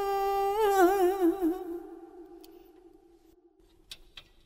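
A chanting voice draws out the last note of a line of Vietnamese poetry chanting (ngâm thơ). The held note breaks into a wavering trill about half a second in and fades away by about two and a half seconds. Then it goes quiet, with two faint clicks at the very end.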